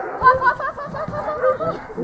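A dog barking in a rapid string of short, high yelps, several a second, with low thumps underneath in the first second.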